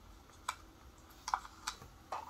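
A few sharp, irregular clicks: one about half a second in, a quick double a little past one second, and another near the end.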